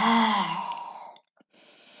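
A woman's loud voiced sigh breathed out through the open mouth with the tongue out, lion's-breath style: one falling 'haa' of about a second that fades away, followed by faint breath noise.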